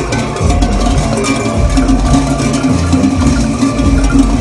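Many large metal bells worn on the belts of costumed folk dancers, ringing in a dense, irregular jangle as the dancers move.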